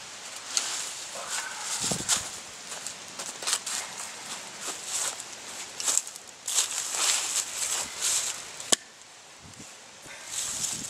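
Footsteps crunching and shuffling through dry fallen leaves, with rustling and handling of a slab of wood, and a single sharp knock near the end.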